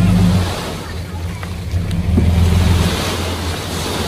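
A 5-ton dump truck's engine running steadily while its raised bed tips out a load of soil, the dirt sliding and pouring onto the ground as a continuous rushing hiss over the low engine hum.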